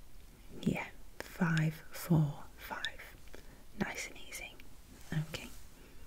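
A woman speaking softly in a few short phrases, partly whispered.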